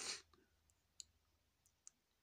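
Faint, scattered clicks from the pedal's wave edit knob being turned, a few separate ticks over two seconds, after a brief hiss at the very start.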